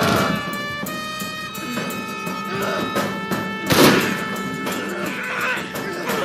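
Film score with sustained string-like notes, over scuffling and thuds from a physical struggle; the heaviest thud comes about four seconds in.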